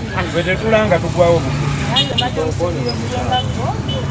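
People talking, with a low steady rumble underneath from about a second and a half in.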